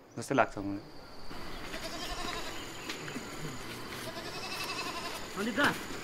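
Outdoor ambience with many faint, short, scattered calls in the distance, with a thin steady high tone over them. Near the end a man shouts a name loudly.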